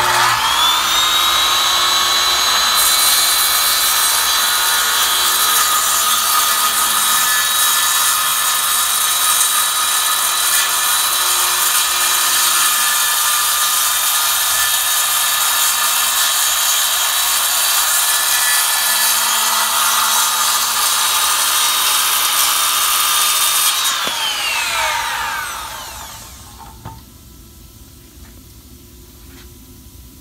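Corded circular saw starting up with a high motor whine, then cutting through a postform laminate countertop from its underside; the blade enters the cut about three seconds in and the steady cutting noise holds for about twenty seconds. The trigger is then released and the motor winds down with a falling whine.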